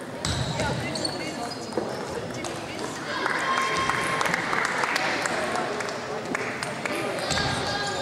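Scattered sharp clicks of table tennis balls bouncing on tables and off paddles, over indistinct voices of people in the hall.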